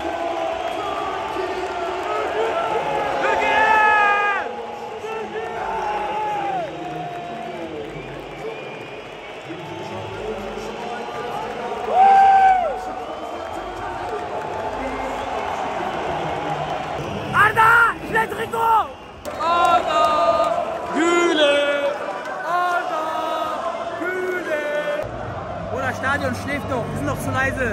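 Football stadium crowd of fans, a steady hubbub with men's voices nearby shouting and whooping in bursts, busiest over the last third.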